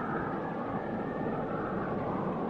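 Steady, even background noise with a low hum and hiss, unchanging throughout.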